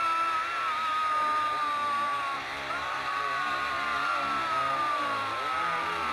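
Film soundtrack: two long, high held tones, each sliding slowly downward, one after the other, over a choppy lower layer.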